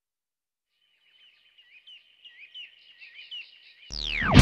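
Faint bird-like chirping: short rising calls repeated a few times a second, starting about a second in. Right at the end a falling sweep leads into the loud band music.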